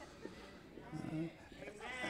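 Quiet pause with a short, faint voice sound about a second in, then a dry-erase marker squeaking on a whiteboard as letters are written near the end.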